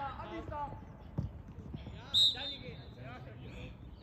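Referee's whistle on a football pitch: one short, shrill blast about halfway through, the loudest sound here, over distant players' voices. A dull knock comes about a second in.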